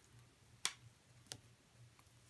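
Two light, sharp clicks about two-thirds of a second apart, from the beads and metal jump rings of a loom-band bracelet knocking together as it is handled.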